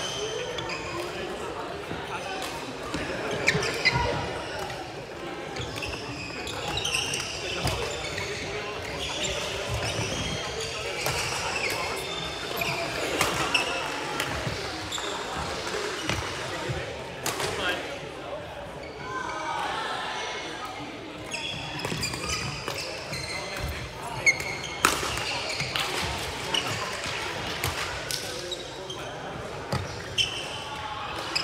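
Badminton rally in a large sports hall: sharp racket hits on the shuttlecock and players' footfalls on the court floor, echoing in the hall, with people talking throughout.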